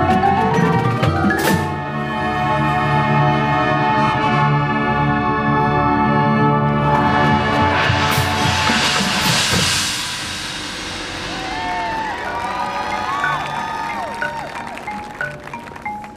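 Marching band with front-ensemble percussion playing: loud held chords for the first several seconds, then a cymbal swell building and fading between about seven and ten seconds in. The music then turns softer, with sliding tones and scattered mallet notes near the end.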